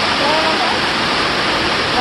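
Heavy rain pouring down in a loud, steady hiss, too loud to talk over. A brief voice sounds about half a second in.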